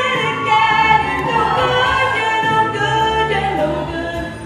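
A woman singing a solo into a microphone over musical accompaniment, holding long notes.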